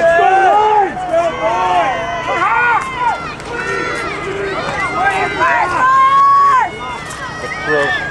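Football spectators shouting and cheering during a running play, several voices overlapping, with one long held yell about six seconds in.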